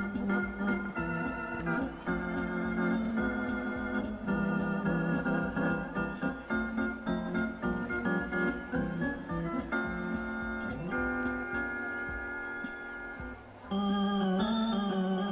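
Organ music: sustained chords and melody notes moving in a steady rhythm, with a short drop in loudness near the end.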